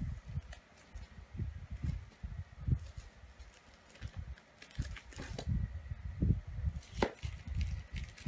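Desk handling noises as stationery is sorted: irregular soft low thumps with a few light clicks and paper rustles, the sharpest click about seven seconds in.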